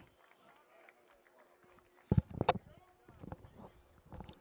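Quiet open-air sports-field ambience with faint distant voices; about halfway through comes a short, loud burst of voice-like sound, probably a shout.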